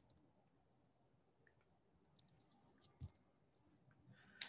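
Near silence with a few faint, short clicks: a couple right at the start and a scattered run of them between about two and three and a half seconds in.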